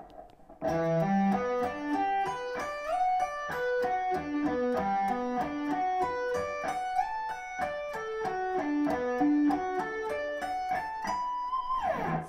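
Electric guitar playing a slow sweep-picked arpeggio lick in E minor, built from stacked minor-seven and major-seven arpeggio shapes and starting on the seventh fret of the A string. Single notes ring one after another, climbing and falling across the strings at an even pace from just under a second in, and the run ends on a held high note.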